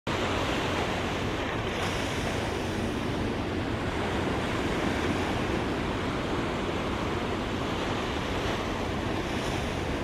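Steady wash of surf on the shore, with wind rumbling on the microphone.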